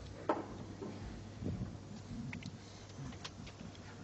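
Hushed snooker arena between shots: quiet room tone with a steady low hum, faint small movements, and one short knock about a third of a second in.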